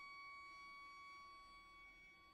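A single high note held very softly, steady in pitch and slowly fading away, in a pianissimo passage for bayan, violin and cello.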